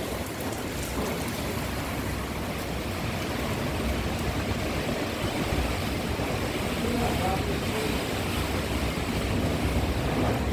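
A windstorm with rain: a steady rushing of wind and rain, with gusts buffeting the microphone as a low rumble.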